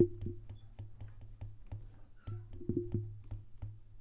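Stylus tip tapping and clicking irregularly on a tablet's glass screen while handwriting, a quick scatter of faint light clicks over a steady low hum.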